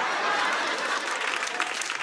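Studio audience applauding and laughing in reaction to a joke, a dense steady patter of clapping.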